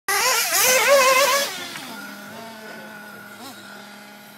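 Agama radio-controlled buggy's motor revving high with a wavering pitch, then dropping after about a second and a half to a lower, quieter steady drone, with a short blip of revs near the end.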